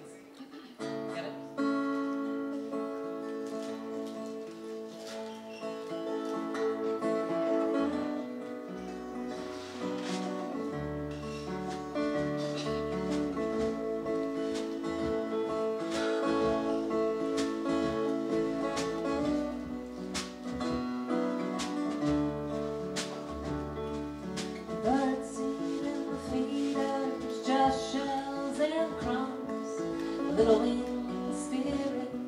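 Live acoustic band playing a song's opening: strummed acoustic guitar with fiddle and a softly played snare drum. Low bass notes join about nine seconds in, and near the end a line slides and bends in pitch.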